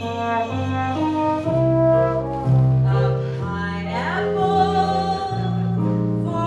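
Live theatre pit band with brass playing a musical-theatre song accompaniment in held notes that change every half second or so.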